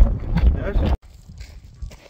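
Wind buffeting the microphone for about the first second, cut off suddenly; after that a much quieter stretch with faint scattered clicks and rustles.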